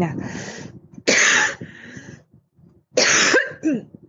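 A person coughing twice, two sharp coughs about two seconds apart, the second ending in a short voiced sound.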